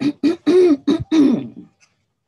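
A person's voice in about five short, pitched bursts over the first second and a half, then stopping.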